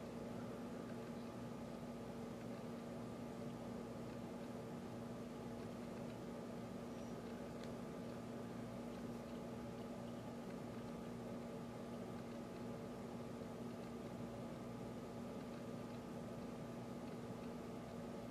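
Faint, steady background hum and hiss of room tone with a constant low tone through it; no distinct sound events.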